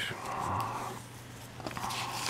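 Paper pages of a book being turned: two soft rustling swishes, one in the first second and one near the end.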